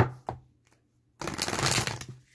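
A sharp click at the start, then a little over a second in, a deck of tarot cards being shuffled by hand, a fluttering rasp lasting most of a second.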